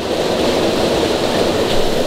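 Steady rushing of creek water cascading over rocks into a pool.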